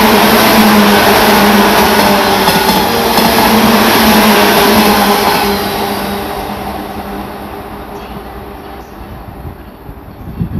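JR 185 series electric multiple unit passing at speed: loud wheel-on-rail running noise with a steady hum. About five seconds in it begins dying away as the train draws off.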